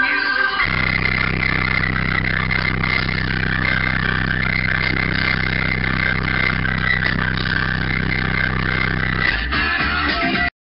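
Bass-heavy music played loud through an 18-inch car subwoofer in a ported box tuned to 28 Hz: deep, sustained bass notes. The note changes about half a second in and again near the end.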